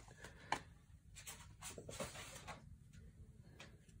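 Faint handling of a freshly opened 1987 Topps wax pack: soft, irregular rustles and light taps of the cardboard cards and the wrapper, with one sharper tick about half a second in.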